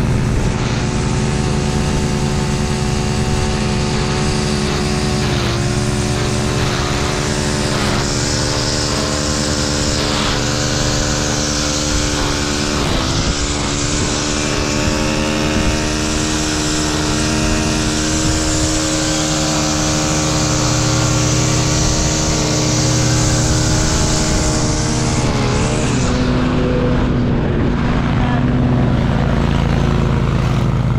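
Zero-turn riding mower engine running steadily under load with the blades engaged, its pitch dipping briefly a few times.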